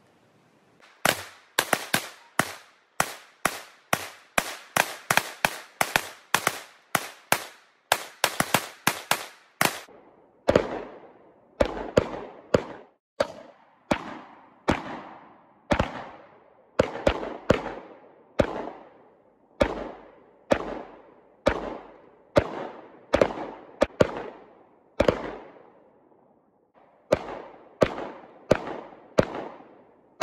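Rapid shotgun fire: a fast string of sharp blasts, about three a second, for roughly the first ten seconds, then steadier shots about one to one and a half a second, each trailing off in echo, with a brief pause near the end.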